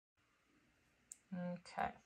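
Near silence for about a second, then a faint click and two short sounds from a woman's voice near the end, just before she speaks.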